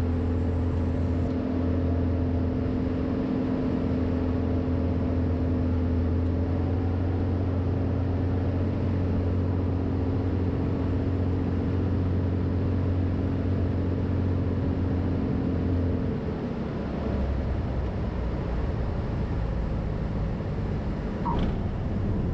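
Cirrus SR22's Continental IO-550 engine and propeller running steadily on final approach, with airflow rushing past. About 16 seconds in the engine note drops away as power comes off for the landing flare.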